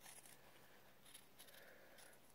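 Faint, near-silent snips of small scissors cutting through two layers of cotton fabric, trimming a seam allowance, as a few short sharp clicks.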